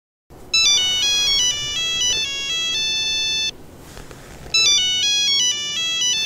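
Old mobile phone ringtone: a high, beeping polyphonic melody that plays for about three seconds, breaks off for about a second, then starts again.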